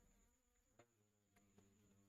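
Near silence: faint room tone with a low hum and a thin steady high whine, broken by a couple of faint clicks.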